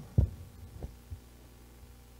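Low thumps of a handheld microphone being handled as it is set down: one loud bump about a quarter second in, then two fainter knocks within the next second, over a steady low hum.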